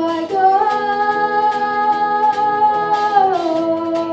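A young girl's solo singing voice holds one long note with a live rock band of drums, electric guitar and bass guitar. The note steps up a third of a second in and glides back down near the end, over steady cymbal strikes.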